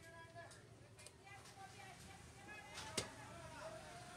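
Large knife chopping fish on a wooden tree-trunk block: one sharp chop about three seconds in, with a few lighter knocks before it, over faint voices.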